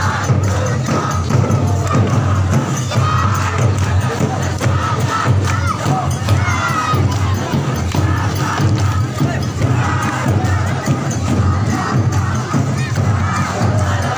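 A large crowd of adults and children shouting and cheering together, many voices at once, with a steady low rumble underneath.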